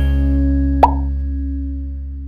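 An intro jingle's closing low chord ringing out and slowly fading, with a single short pop sound effect just under a second in.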